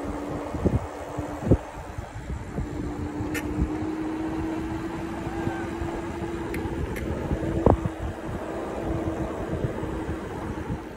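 Lectric e-bike riding at about 16 mph under pedal assist: a steady low hum from the motor and tyres, with wind buffeting the microphone. A couple of sharper knocks, about a second and a half in and again near the end.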